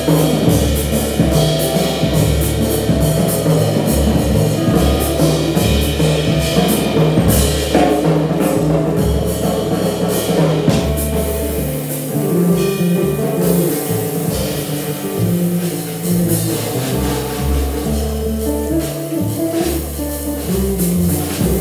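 Live jazz trio playing: guitar, upright double bass and drum kit with steady ride-cymbal strokes over a moving bass line.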